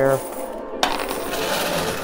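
Quarters clinking and scraping against each other on a coin pusher machine's playfield as the pusher shelf shoves the coin bed forward, a dense rattle of many small metal clicks.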